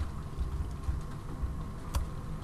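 Faint computer keyboard typing: a few scattered key clicks over a low background hum.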